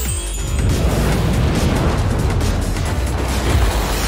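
Sound effect of a jet of flame blown from the mouth: a rushing burst of fire noise, starting about half a second in and running on for over three seconds, with background music under it.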